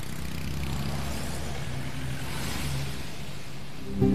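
A car engine running with a steady low hum.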